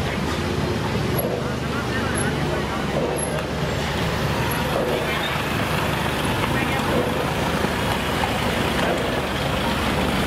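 Street traffic: motor scooter and car engines running at low speed over a steady low rumble, with people's voices in the background.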